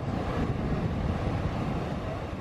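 A steady rushing noise, even and without tone, that starts abruptly and begins to fade near the end.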